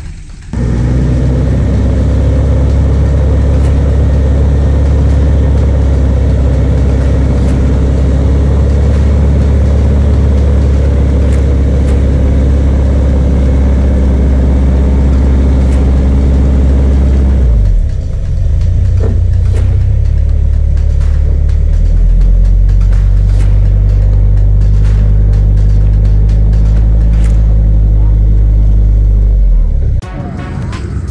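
Four-wheel-drive engines running in a mud bog, recorded overloud and distorted: a steady low engine drone that shifts about 18 seconds in and settles into a new steady note a few seconds later, with scattered clicks.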